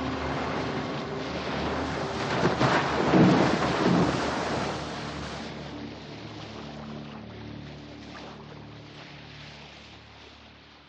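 Film soundtrack: rushing, splashing sea water as a shark's fin cuts through the waves, swelling to a loud surge about three seconds in, over low sustained notes of the score. Everything then fades down steadily.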